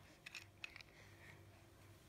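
Near silence: room tone with a low hum and a few faint short clicks in the first second.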